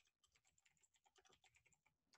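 Computer keyboard typing, very faint: a quick run of soft key clicks.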